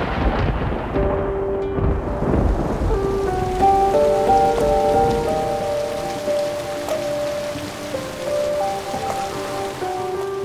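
Steady heavy rain with thunder rumbling at the start and again about two seconds in. A slow melody of held notes comes in over the rain within the first few seconds.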